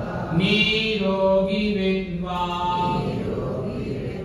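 Buddhist chanting: a voice intoning long, drawn-out held notes in phrases of about a second each, sliding into each note.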